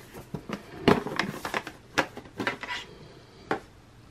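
Hands opening the black metal tin case of a BaBylissPRO trimmer: several light knocks and clicks as the lid is worked off and the case is handled.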